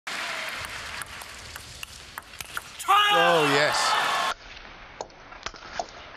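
Table tennis rally: the celluloid ball clicking sharply off the bats and table, a hit every third to half a second. About three seconds in, a loud shouted voice breaks in for about a second and a half, then the clicks resume.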